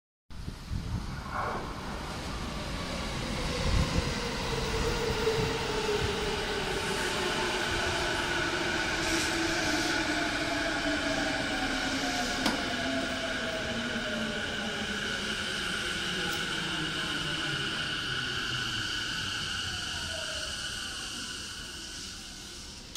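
Electric commuter train pulling into a station and braking to a stop. Its motor whine slides steadily down in pitch as it slows, under a steady higher whine, and dies away near the end as the train halts.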